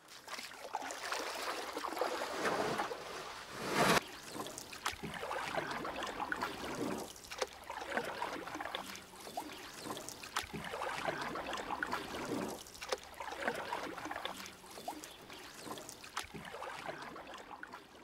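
Moving water, a rushing, splashing sound that swells and falls every two to three seconds, with one short louder burst about four seconds in.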